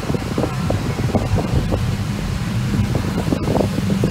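Cabin noise inside a moving car: a steady low rumble of engine and road.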